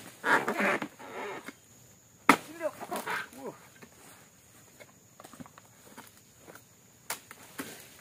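Sharp chopping strikes of a pole-mounted dodos chisel driven into the frond bases and fruit-bunch stalks of an oil palm during harvest: one right at the start, one a little over two seconds in, and one about seven seconds in.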